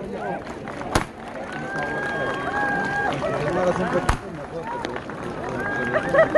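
A crowd's voices calling out and chattering over one another, some drawn-out, with two sharp bangs, one about a second in and one about four seconds in.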